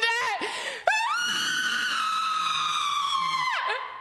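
A person's voice in one long, high-pitched scream, beginning about a second in, held steady and dropping in pitch as it trails off near the end.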